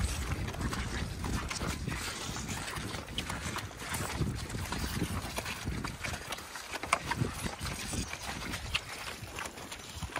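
Friesian horses and a person walking across wet grass pasture: irregular soft footfalls and scuffs on the sodden turf, over a fluctuating low rumble.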